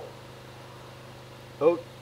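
A steady low hum runs throughout, and near the end a man lets out a short, disgusted "Oh" at the stench of rotting meat.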